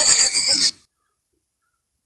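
A person's loud, breathy laugh that cuts off abruptly less than a second in, followed by complete silence.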